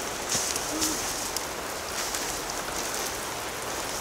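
Steady rain falling on wet pavement, with a few light ticks early in the first second and a half.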